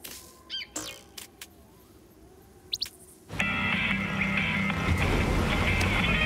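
Cartoon soundtrack: a few short clicks and a brief high chirp, then, a little over three seconds in, a loud steady sound of an old truck's engine running under music starts suddenly.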